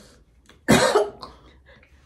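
A woman coughs once, a single short sharp cough about two-thirds of a second in.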